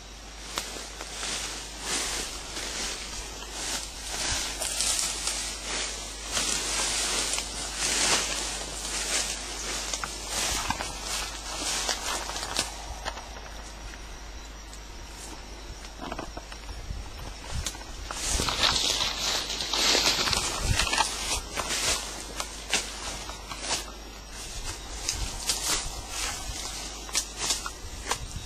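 Footsteps and rustling leaves and branches as someone pushes through dense forest undergrowth, in uneven bursts that swell about a third of the way in and again about two-thirds of the way in.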